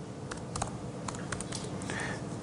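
Computer keyboard being typed on, a quick, irregular run of about ten key clicks.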